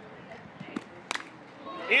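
A softball bat striking a pitched ball about a second in, one sharp crack, over a low steady crowd murmur.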